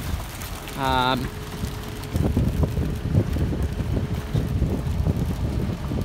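Inside a tractor cab in heavy rain: a low, uneven rumble of the running tractor with gusty buffeting from wind and rain on the cab.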